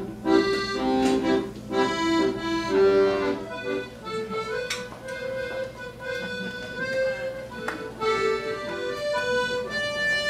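Accordion music: two accordions playing together, full sustained chords with a melody on top. About four seconds in, the texture changes to a lighter single melody line over a thinner accompaniment.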